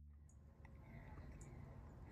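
Near silence: faint background hiss with a few faint ticks.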